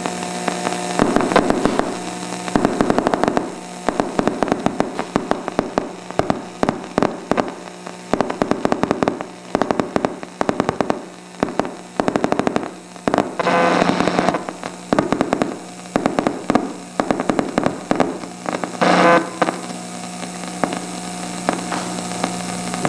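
AM radio loudspeaker crackling with irregular clusters of sharp clicks and pops: interference from sparks as a battery is short-circuited next to the radio. A steady hum runs underneath.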